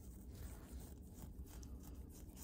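Faint scratching of a scalpel blade scraped in short strokes over dry, flaky dead skin on a healed venous ulcer, over a low room hum.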